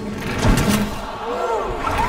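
Animated-cartoon soundtrack: a sudden hit or whoosh about half a second in, then a few short rising-and-falling vocal cries.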